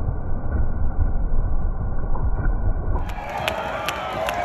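Skateboard wheels rolling on a wooden bowl: a muffled low rumble. About three seconds in it gives way to crowd noise with hand claps.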